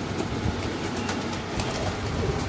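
A flock of domestic pigeons cooing low and continuously, with a few brief sharp clicks and wing flaps.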